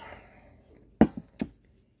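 A soft breathy exhale, then two sharp clicks about half a second apart with a smaller one between, just after a sip of ginger ale through a straw.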